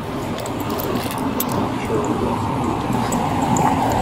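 Steady rushing noise on a police body camera's microphone as the officer walks, with a few faint jingling clicks of gear.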